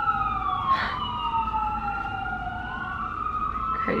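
Several emergency-vehicle sirens wailing at once, their pitches sweeping slowly up and down and crossing each other, heard through a closed apartment window.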